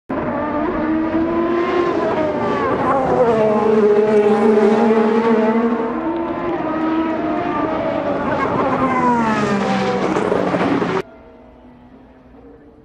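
IndyCar racing engines (turbocharged V6s) running at high revs as several cars race past, their pitch rising and falling. The engine sound cuts off suddenly about a second before the end.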